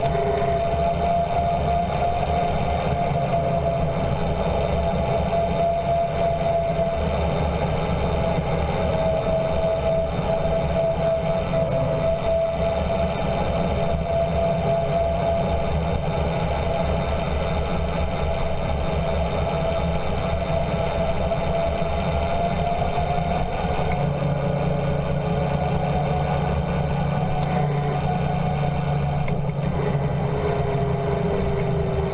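Tyres and brakes on a fast descent down a paved mountain road: a steady whine that drifts slightly in pitch, over a continuous low rumble.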